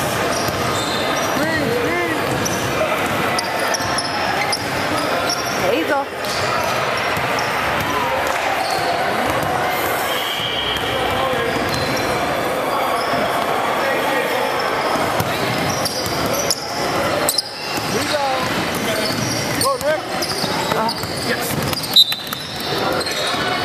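Basketballs bouncing on a hardwood gym floor, with a few sharp bounces standing out, over indistinct voices echoing around the gym hall.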